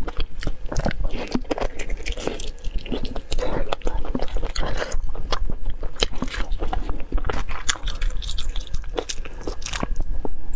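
Close-miked chewing and biting of saucy braised meat, with many irregular sharp smacks and clicks of the mouth throughout.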